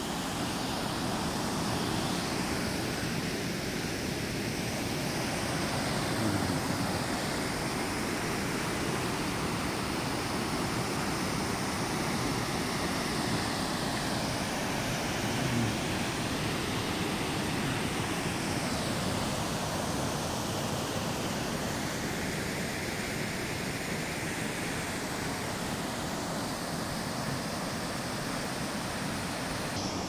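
Swollen river in flood pouring over a weir: a steady, unbroken rush of whitewater.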